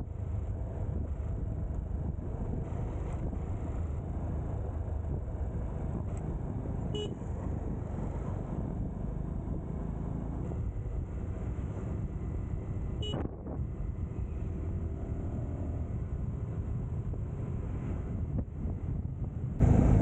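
Motorcycle riding at road speed, heard from the rider's seat: a steady low rumble of engine and wind. Short horn toots come about seven and thirteen seconds in.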